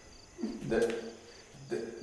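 Crickets chirping steadily in short, evenly repeating high pulses, under two brief hesitant spoken words.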